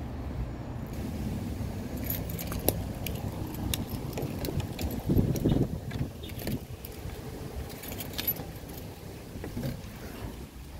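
A bunch of keys jingling in hand in many short clinks, with a louder handling thump about five seconds in as a car door is opened.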